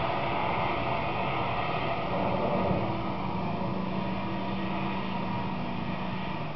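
Engine of a 1999 Ford Ranger pickup running under load as the truck drives off through deep snow, a steady drone with the wheels churning snow, heard as played back through a TV speaker.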